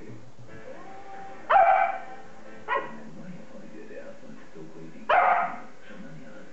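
Young beagle barking in play, three barks: one about a second and a half in, a shorter one near the three-second mark, and a longer one just after five seconds.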